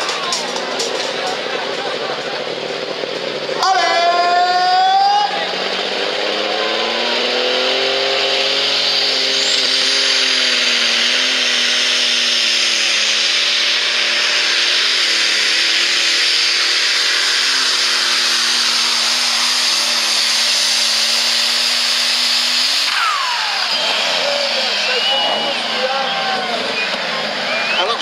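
Superstock pulling tractor's turbocharged diesel engine at full load during a pull: a louder burst about four seconds in, then revs climbing with a rising turbo whine and holding at a steady high pitch for over ten seconds, before the revs fall away near the end as the run finishes.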